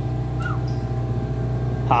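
Small boat's outboard motor running steadily at low idle, a constant low hum. Laughter starts right at the end.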